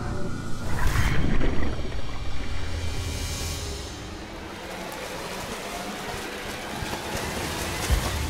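Documentary background music with rushing, splashing water over it: a loud surge about a second in and a hissing swell around three seconds, then a quieter stretch.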